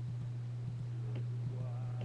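A steady low hum with a faint click about a second in, and a faint murmur near the end.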